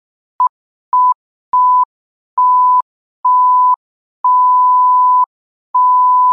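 A series of electronic beeps on one steady pitch, seven in all, each longer than the one before: from a short blip to one held for over a second at the end, with silence between them.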